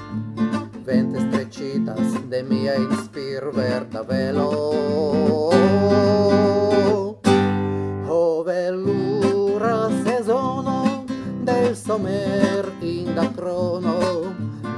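A man singing a song in Esperanto, accompanying himself on a strummed acoustic guitar, with a long held note in the middle and a brief break about eight seconds in.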